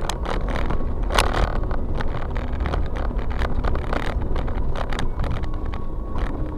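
Engine and road noise of a vehicle moving slowly, heard from inside the cabin: a steady low rumble with irregular clicks and knocks, the strongest about a second in.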